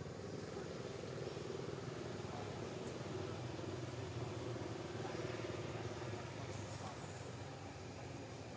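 A steady low motor drone, a little louder in the middle and easing off near the end.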